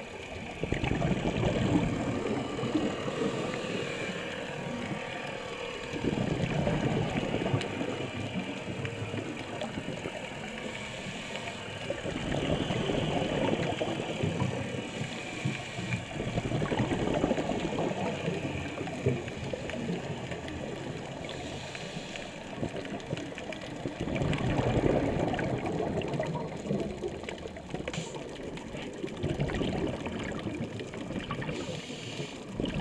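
Scuba regulator breathing heard underwater: bubbly exhalation gushes every five or six seconds, with quieter stretches between them, over a faint steady crackle of the reef.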